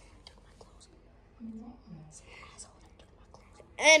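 A person's voice, mostly a faint low murmur and a whisper, with a few soft clicks. Clear speech starts just before the end.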